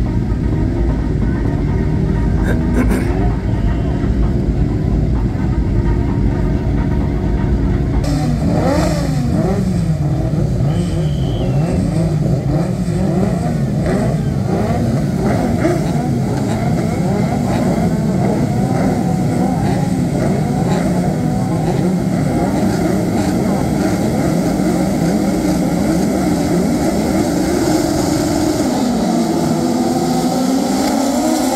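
A field of VW Beetle-class autocross cars on the start grid, their engines idling together at first, then from about eight seconds in revved up and down repeatedly, many at once. Near the end the cars pull away off the start.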